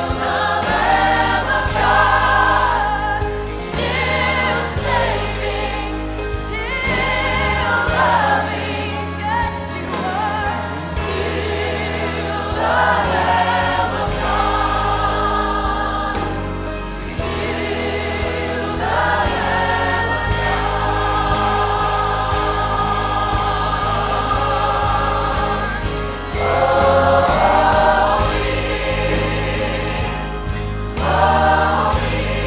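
A choir and lead singer performing a gospel worship song with a live band of drums, bass, electric guitar and keyboard, the singing and music continuous.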